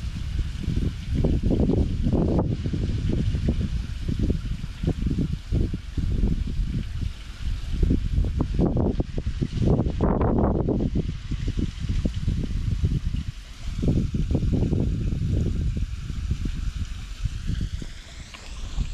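Shallow ditch water trickling and running over stones, mixed with an uneven low rumble of wind on the microphone.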